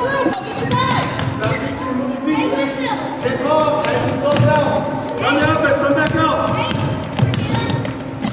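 Basketball being dribbled on a hardwood gym floor during play, with overlapping shouts and chatter from spectators and players echoing in the gym.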